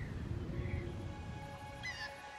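Outdoor nature ambience with a low rumble and a few short bird chirps, three in all. Soft sustained music notes fade in about halfway through.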